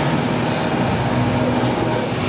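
Loud, dense background music with a steady low note underneath.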